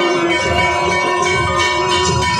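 Temple aarti bells ringing continuously over devotional music with a held sung note.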